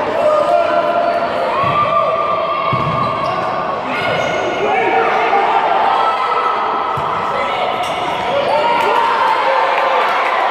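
Voices shouting and calling in an echoing indoor sports hall during futsal play, with a few thuds of the ball being kicked on the hard court.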